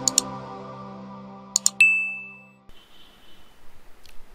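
Intro music's held chord fading out, with a pair of sharp clicks at the start and another pair about one and a half seconds in, then a single bright ding that rings out briefly: the sound effects of a subscribe-button animation. The music stops suddenly a little later, leaving faint room tone.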